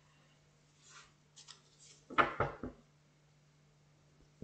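Tarot cards being gathered up off a cloth-covered table, with faint card handling and then three or four quick sharp knocks a little over two seconds in as the deck is handled against the table. A low steady hum runs underneath.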